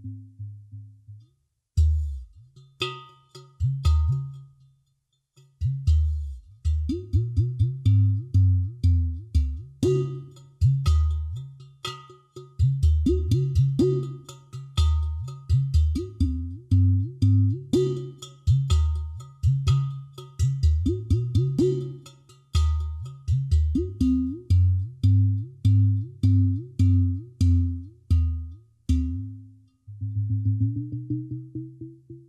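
Solo udu, a skinless two-chamber clay pot drum, played by hand in a rhythmic groove: deep bass tones that bend upward in pitch as the palm seals and releases the drum's hole, mixed with sharp fingertip clicks on the clay. There are two short pauses near the start.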